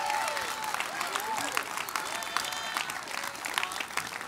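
Church congregation applauding, with a few voices calling out among the clapping.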